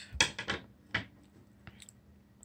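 A few sharp clicks and light knocks in the first second, then fainter ticks: scissors and a yarn-wrapped pencil being handled and set against a hard tabletop.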